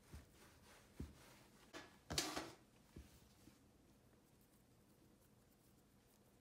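Plastic dough scraper cutting through dough and tapping on a silicone baking mat: a few soft taps about a second apart, with a brief scraping rustle about two seconds in.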